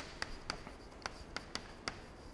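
Chalk writing on a blackboard: a faint, irregular run of short sharp taps and scrapes as letters are chalked on.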